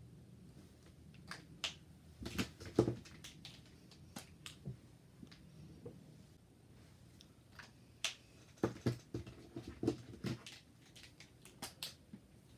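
Posca paint marker's tip tapping and scratching on a plastic outlet cover while colouring in an area: irregular small clicks and scrapes, coming in two busy clusters, about a second in and again from about eight seconds in.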